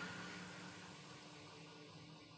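Near silence: faint room tone, a steady hiss with a low hum, growing slightly quieter.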